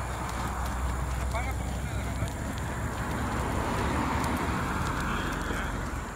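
A tractor-trailer dolly on fire, burning with scattered crackles over a steady low hum. A vehicle passes, swelling and fading about halfway through, and faint voices are heard.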